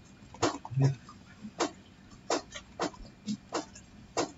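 Computer keyboard typed slowly and unevenly: about ten separate key clacks with uneven gaps, plus a short low thump about a second in.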